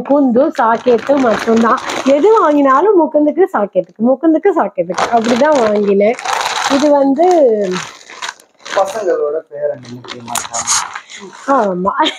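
A woman talking, with plastic bags and packaging crinkling and rustling as items are lifted out of a shopping bag; the talk and rustling ease off for a few seconds near the end.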